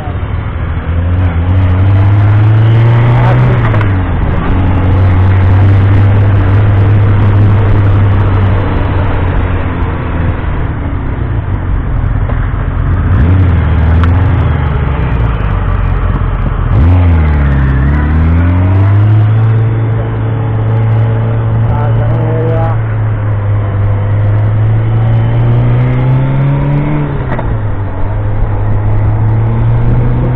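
Motorcycle engine running close by at steady revs. Its pitch dips and climbs back several times as it slows and picks up speed, over a steady rush of wind noise.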